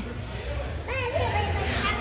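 Faint background voices, including a small child's high voice about a second in, over a low steady hum of room ambience.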